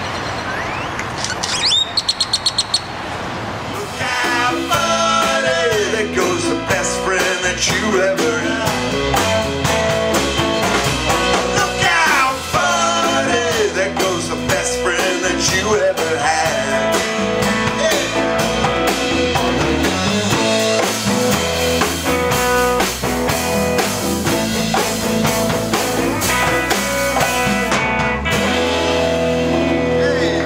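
Live band playing electric guitar, electric bass, drum kit and congas, starting about four seconds in, with the guitar bending notes. Before it comes a few seconds of outdoor noise with a quick run of high chirps.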